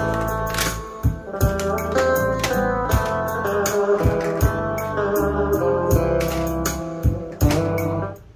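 Music with a steady beat and strong bass playing through a Sony CFD-700 CD-cassette boombox, its low end carried by the rear subwoofer.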